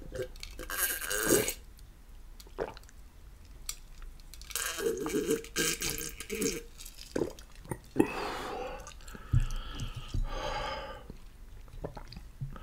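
A man drinking water from a glass close to the microphone, with gulps and swallows in separate bouts. Near the end comes a short, pitched voiced sound from his throat.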